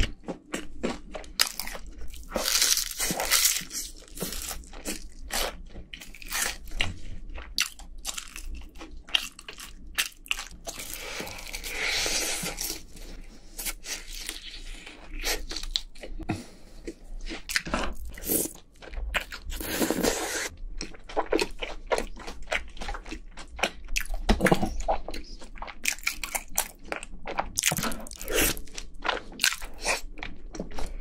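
Close-miked eating sounds: crunchy bites and chewing of crispy fried chicken and saucy rice cakes. A continuous run of crackles, with several louder crunchy stretches spread through.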